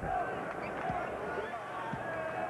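Arena crowd murmur, with two dull thuds about a second apart from a basketball being bounced on the hardwood floor before a free throw.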